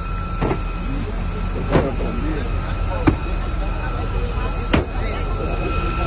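Outdoor sound from an amateur phone video at a roadside crash scene: a steady low rumble with faint voices. Over it runs a steady high tone, and a sharp click comes about every second and a half.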